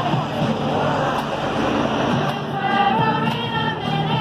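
Women's choir singing in the open air, the voices coming through more clearly in the second half.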